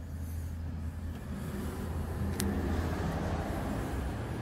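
A steady low hum with a faint rumbling background, and one sharp click about two and a half seconds in.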